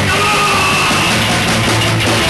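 Live heavy rock band playing loud: distorted electric guitars, bass and drums, with a held, shouted vocal over them.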